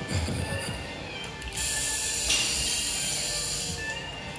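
Rear delt fly machine's cable running over its pulleys as the weight stack moves through a rep, a steady hissing whir lasting about two seconds, over background music.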